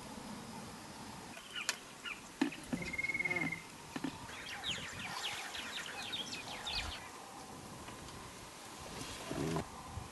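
Wild birds calling over faint bush ambience. A short steady high trill comes about three seconds in, and a run of rapid chattering notes follows a couple of seconds later. A few sharp clicks come early, and a brief low sound comes near the end.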